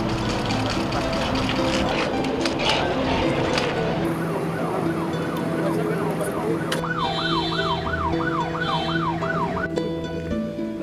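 Emergency-vehicle siren in a fast yelp, rising and falling about three times a second. It comes in faintly about four seconds in and grows much louder for the last three seconds before cutting off just before the end. Busy street noise with scattered clicks fills the first few seconds.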